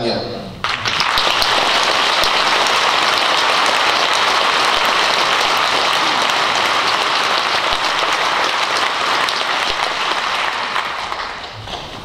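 Large audience applauding: the clapping starts suddenly just under a second in, holds steady, and dies away near the end.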